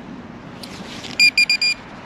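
Metal-detecting gear beeping: four quick, high-pitched electronic beeps in about half a second, the last one a little longer, signalling metal close by.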